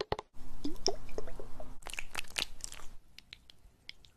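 Close-up ASMR sounds of a plastic baby-oil bottle being handled and oil being worked between the hands and over the skin: a dense run of crackly, squishy clicks that thins out and turns quieter in the last second.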